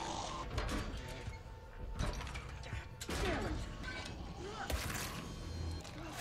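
Creaking and clanking from a heavy fallen chandelier being strained against as someone tries to lift it, with scattered knocks, heard as TV soundtrack under quiet score.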